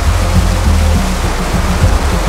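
Rushing creek water over rocks, a steady loud hiss, laid under background music with a low bass line.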